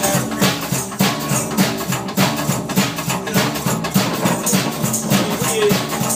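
Live band playing an instrumental passage with no singing: upright double bass walking a steady line under electric guitar and a drum kit keeping an even beat.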